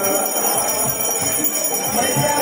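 Many bells ringing on and on without a break during the aarti ceremony, with devotional music behind them.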